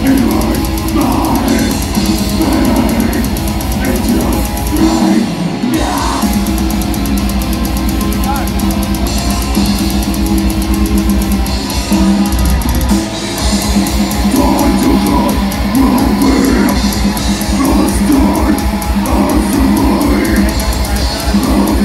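Heavy metal band playing live: distorted guitars, bass and fast, driving drums, with the singer's vocals. The band briefly drops out about five seconds in and again around thirteen seconds before crashing back in.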